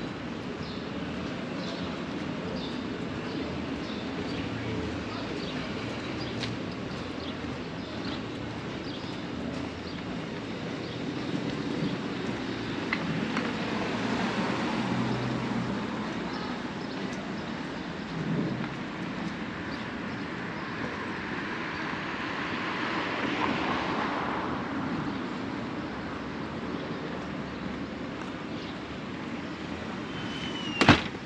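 City street ambience: a steady hum of traffic on the road beside the sidewalk, with vehicles swelling past about midway and again about three quarters of the way through.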